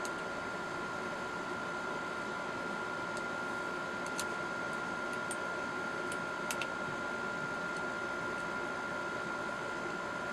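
Steady room hiss with a constant faint high whine, broken by a few light clicks about four seconds in and again a little past the middle as the air rifle's metal parts are handled.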